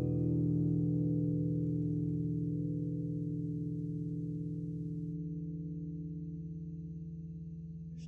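Music: a held chord on a plucked string instrument, likely guitar, ringing out and slowly dying away, its higher overtones fading out about five seconds in.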